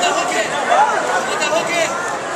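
Overlapping voices of onlookers talking and calling out at once, a steady chatter with no single clear speaker.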